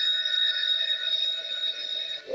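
Video slot machine's electronic sound effect for the expanding-symbol feature: a bright, steady ringing tone that starts suddenly and holds for about two seconds.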